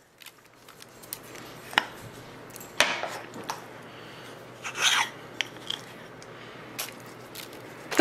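Salt and pepper grinder being twisted over raw chicken, grinding in a few short bursts.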